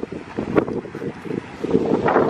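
Wind buffeting the microphone in uneven gusts, a low rumbling noise.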